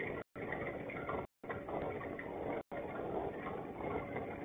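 Steady noise of a small boat on the water, with a faint steady hum, picked up by a boat-mounted camera. The audio cuts out to silence three times for a split second.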